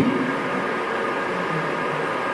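Steady hiss of room tone picked up by the lecturer's microphone, with no words spoken.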